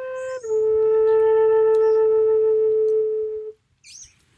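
Wooden end-blown flute playing a short note that steps down to a long held lower note, which fades out about three and a half seconds in.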